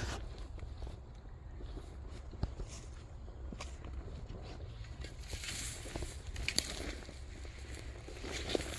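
Dry reeds and grass rustling under footsteps as a person climbs down into a ditch, louder from about five seconds in, with a sharp click about two-thirds of the way through. A steady low rumble lies underneath.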